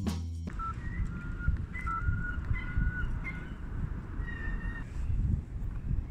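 Intro music cuts off about half a second in, giving way to outdoor city street ambience: an uneven low rumble with a few faint, thin high tones, each held for up to a second.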